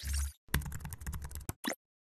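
Computer keyboard typing sound effect: a rapid run of keystrokes lasting about a second, then one separate click after a short pause. It opens with the tail of a whoosh and a low thud.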